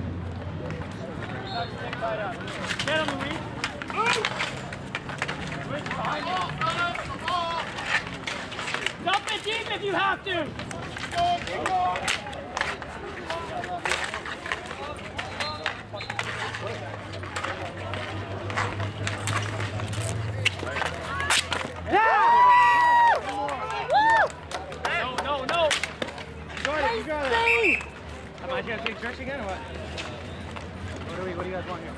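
Street hockey game on asphalt: many short sharp clacks of sticks and ball, with players calling out over them and a loud burst of shouting about 22 seconds in.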